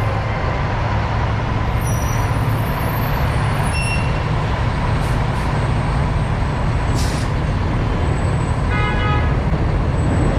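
Heavy stop-and-go city traffic with the engine of a large truck or bus rumbling close by. There is a short hiss about seven seconds in and a brief horn toot about nine seconds in.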